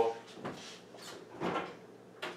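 A kitchen oven door being opened: a faint knock about half a second in, then one short, louder sound about a second and a half in.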